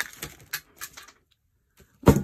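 Steel whisk wires and metal wire cutters being handled: a sharp click at the very start, then a few light clicks and taps.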